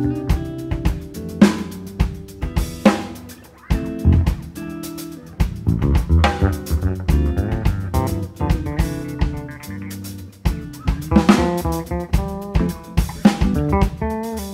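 Instrumental music from a trio of guitar, bass guitar and drum kit, with the snare and bass drum strokes prominent over the guitar and bass lines.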